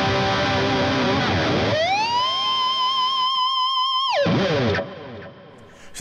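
Distorted electric guitar pitched harmonic on a Dean Nashvegas with a Floyd Rose tremolo. After a sustained stretch, the bar scoops the pitch up to a held high note, a B harmonic bent up to a C, which wobbles slightly. About four seconds in it dives down sharply and dies away.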